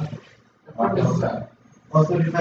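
A man's voice, two short indistinct utterances: a brief one at the start and a longer one about a second in.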